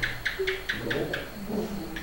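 Small metal ritual bell struck in a quick even roll, about four light strokes a second, dying away about a second in, then a single stroke near the end. A faint low voice runs underneath.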